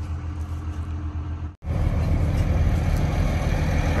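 Truck engine running, a steady low drone. It cuts out abruptly about one and a half seconds in and comes back louder.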